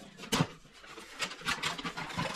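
Gift-wrapping paper being torn and crinkled by hand as a box is unwrapped: irregular rustling and ripping, with a sharper rip about a third of a second in and busier rustling from about a second in.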